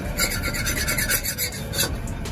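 Flat metal spatula scraping across an iron griddle in quick repeated strokes, a rough rasping that stops shortly before the end.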